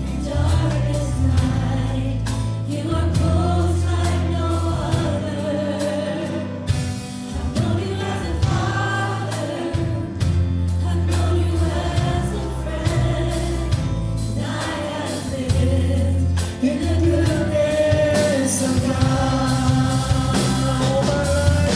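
Live contemporary worship music: a band with bass and a steady drum beat leads a congregation singing a praise song together.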